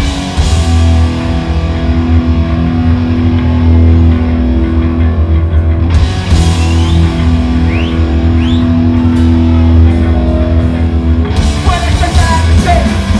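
Hardcore punk band playing live at full volume: distorted electric guitar, bass and drum kit kick straight into the instrumental opening of a song. Cymbal crashes come at the start, about six seconds in, and again near the end.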